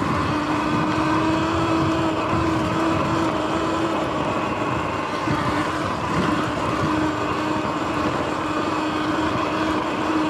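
Sur Ron X electric dirt bike riding at speed: a steady whine from the electric motor and drivetrain, holding nearly one pitch, over a rough rumble of tyres on the dirt track and wind.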